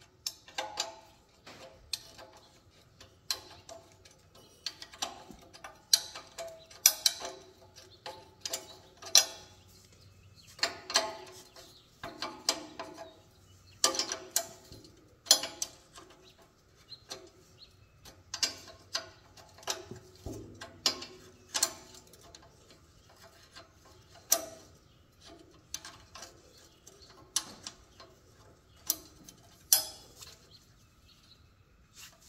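Socket ratchet clicking in short, uneven runs as 9/16-inch bolts are backed out of a tiller's steel engine guard, with sharp metal clinks of the tool against the bolts.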